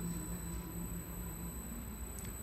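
Quiet room tone with a faint steady low hum that fades out shortly before the end.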